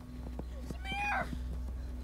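A boy's short, high-pitched distressed cry, rising then falling, over a faint steady hum, with a few light clicks just before it.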